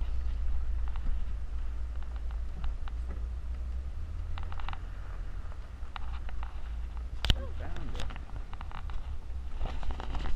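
Low steady rumble of a 1985 Volkswagen Vanagon running at low speed, heard from inside the cab on a dirt road, with scattered rattles and clicks and one sharp knock about seven seconds in.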